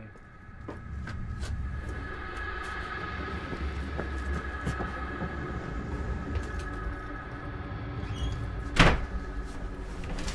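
A steady low rumble with a faint high drone over it, and one sharp bang about nine seconds in.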